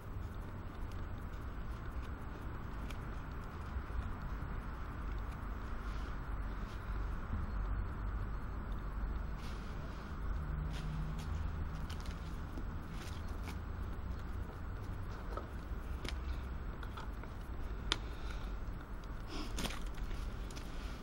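Fixed-blade bushcraft knife whittling wood: faint scraping cuts and small clicks every few seconds, over a steady low outdoor rumble.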